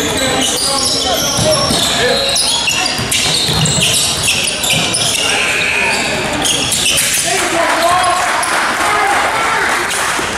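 Basketball being dribbled and bouncing on a hardwood gym floor, with indistinct shouts and chatter from players and spectators echoing in a large gym. From a little past halfway the voices swell.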